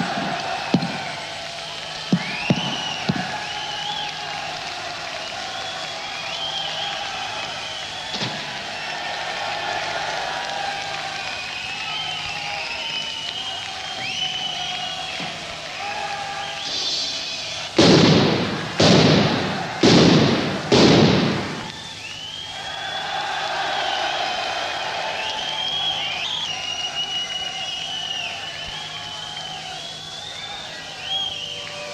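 Live heavy-metal recording between songs: a steady low hum and high, gliding squeals throughout. About two-thirds of the way through come four loud crashing hits, about a second apart.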